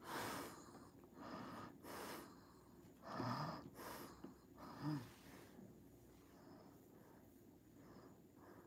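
A woman breathing audibly close to the microphone, a run of soft breaths over the first five seconds, with a voiced sigh about three seconds in.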